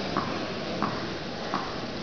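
A tennis ball bounced three times on the court, about two-thirds of a second apart: the pre-serve bounce. Steady hall noise runs underneath.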